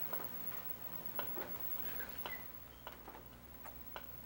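Faint, irregularly spaced clicks and small pops from a plastic squeeze bottle squirting pigmented paper pulp onto a wet sheet of handmade paper.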